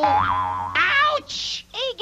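A comic boing sound effect as the puppet hurts himself, followed by a short noisy burst and a brief cry.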